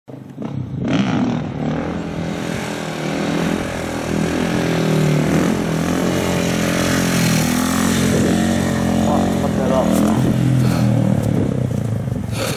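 KTM 450 supermoto's single-cylinder four-stroke engine revving as the bike rides up and is held in a wheelie, its pitch rising and falling with the throttle.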